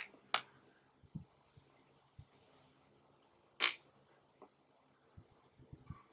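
Mostly quiet, broken by a few short sucking sounds of water being drawn through a Sawyer Mini inline filter from a plastic bottle. Two quick ones come right at the start and a longer one about three and a half seconds in.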